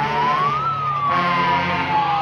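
A siren wailing, its pitch rising to a peak under a second in and then falling slowly.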